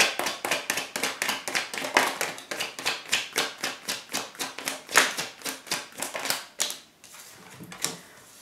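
Tarot deck being shuffled by hand: a fast, even run of card clicks that stops about a second before the end.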